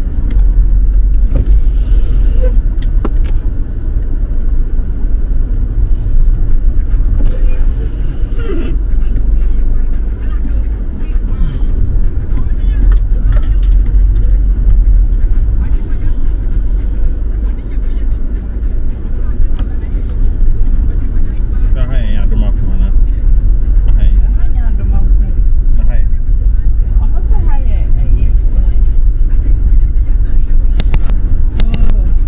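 Inside a car driving on an unpaved dirt road: a loud, steady low rumble of engine and tyres, with a few faint knocks.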